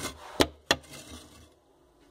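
Two sharp knocks of a mason's trowel against bricks, about a third of a second apart, followed by quiet.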